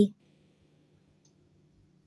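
The last syllable of a spoken line cuts off at the very start, then near silence with a faint steady low hum.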